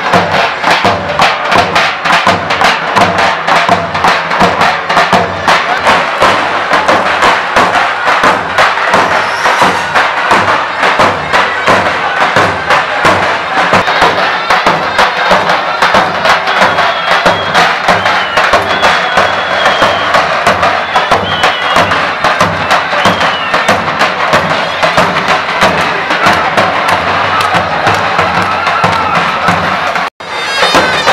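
Davul and zurna playing halay dance music: the big double-headed bass drum beats a quick, steady rhythm under the shrill, reedy zurna, with crowd noise behind.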